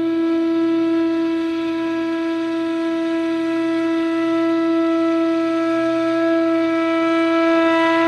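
Indian flute holding one long, steady note over a quiet low drone.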